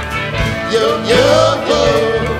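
Live rock band playing an instrumental break, with drum kit and bass under a lead line whose notes bend up and down in pitch.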